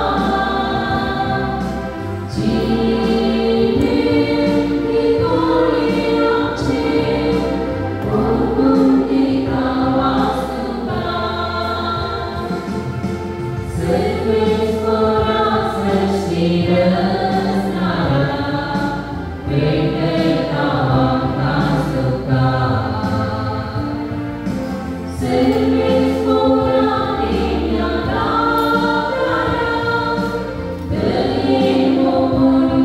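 A church choir singing a hymn with instrumental accompaniment, the melody carried over steady held bass notes.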